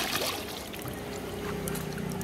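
Milky phenyl mixture poured in a stream from a plastic mug back into a large basin of the same liquid, splashing, to mix it. The pour is loudest at the start and dies away within the first second.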